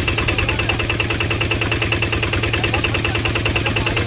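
Small single-cylinder diesel engine of a walking paddy tractor idling steadily, a rapid even beat with a low hum beneath it.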